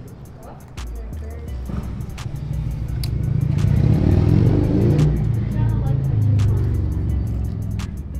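A loud motor vehicle passing close by, its engine rising for about four seconds to a peak and then fading away, over background music with a steady beat.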